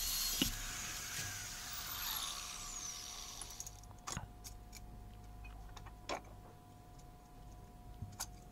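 Angle grinder spinning down after cutting through steel tubing: its noise fades over about three and a half seconds with a falling whine. Then a couple of light knocks as the cut tube is handled, about four and six seconds in.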